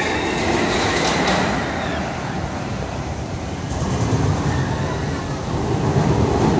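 Rumbling, rushing noise of a swinging flying-style amusement ride as its arms and rider cars sweep past close by. The noise swells about four seconds in.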